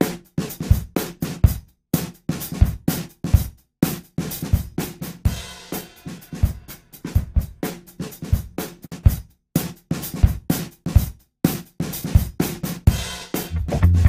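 A soloed drum loop (kick, snare, hi-hats and cymbal) plays through a Softube Console 1 SSL 4000 E channel-strip emulation. Its gate is set with a high threshold and short release, so the hits are cut off short with silent gaps between them. The transient shaper's punch and sustain are being adjusted, and the section is switched off and back on.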